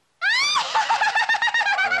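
A cartoon witch girl's high-pitched cackling laugh. It opens with a rising shriek a quarter second in, then runs on as a fast string of short cackles.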